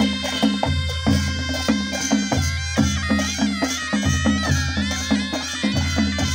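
Nepali Panche Baja ensemble playing: sanai reed pipes carry a wavering, sustained melody over a steady beat from the dholaki drum, damaha kettledrum and jhyali cymbals.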